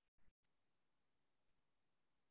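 Near silence: a faint noise floor with no distinct sound.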